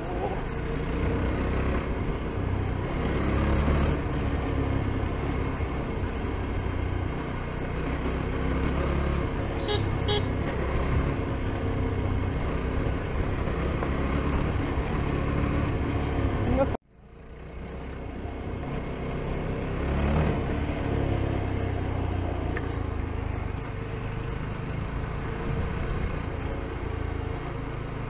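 Yezdi Scrambler's single-cylinder engine running steadily while riding, mixed with wind rushing over the action camera's microphone. About two-thirds of the way through, the sound cuts out suddenly and then fades back in.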